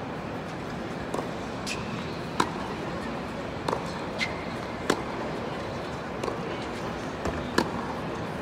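Tennis balls being struck by rackets in a practice rally: sharp pops roughly once a second, with ball bounces on the hard court in between. Under them runs a steady murmur of spectators' voices.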